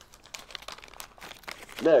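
Foil package of AED electrode pads crinkling as it is handled and the pads are drawn out, a run of small irregular crackles.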